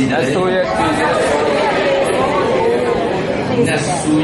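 Speech only: a man talking steadily into a handheld microphone.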